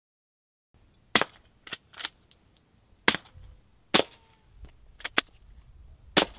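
Suppressed .22LR rifle shots: several sharp cracks spaced a second or more apart, with quieter clicks between them.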